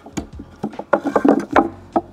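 Several wooden knocks and scrapes as a loose block of dimensional lumber is lifted out of a wooden box frame and fitted back between its sides, wood striking and rubbing on wood.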